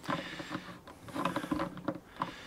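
Small plastic clicks and rattles of a lawnmower's fuel cap being handled and fitted back on the tank.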